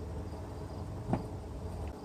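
Quiet outdoor background with a steady low rumble and one brief soft knock about a second in.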